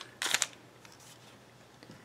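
A short, scratchy rasp lasting about a quarter second, as a tape measure is drawn off a flattened crocheted piece.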